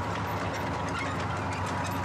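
Tank engines running with tracks clanking, a steady low drone scattered with many small rattling clicks.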